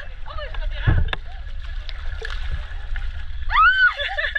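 People's voices chattering, with one long high rising-and-falling vocal exclamation about three and a half seconds in, over a steady low rumble.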